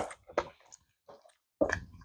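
Wet mouth sounds from chewing a large mouthful of bubble gum: a few short smacks and clicks, with quiet gaps between them.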